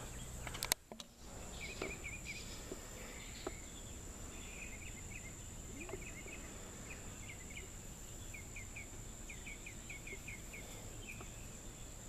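Faint outdoor ambience: a small bird chirping in quick runs of short notes, over a steady high-pitched insect drone. A couple of clicks and a brief dropout about a second in.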